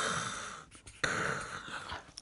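A woman voicing a raspy, voiceless "khhh" at the back of the throat twice, the first fading out and the second about a second in. It is her demonstration of the Nakoda guttural h (ȟ), a sound with no English equivalent.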